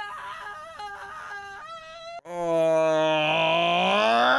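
A man's long, loud, drawn-out groan of dismay. It starts about two seconds in, is held steady, and rises slightly in pitch near the end. Quieter dialogue comes before it.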